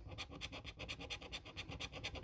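Scratch card's coating being scratched off with quick back-and-forth strokes, about ten to twelve rasps a second.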